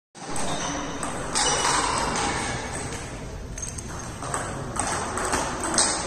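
Table tennis rally: the ball clicks sharply off the bats and the table in a back-and-forth, the hits coming closer together toward the end.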